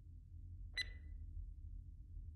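Faint low hum with one short, high ringing click a little under a second in.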